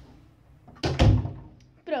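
A room door being pushed shut, closing with a single low thud about a second in.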